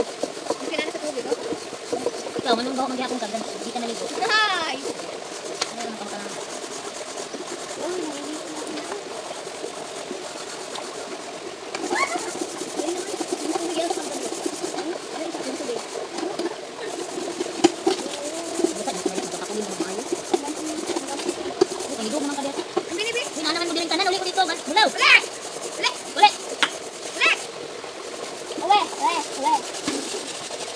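Metal cooking pots and a wok being scrubbed and rinsed by hand in shallow river water, with occasional sharp clinks of metal, under people's voices.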